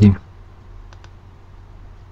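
A single sharp computer-mouse click about a second in, over a low steady electrical hum, with the tail of a spoken word right at the start.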